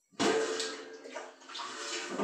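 Steel kitchen vessels being handled with water: a sudden metal clank a moment in, ringing on, with water splashing in the steel pot.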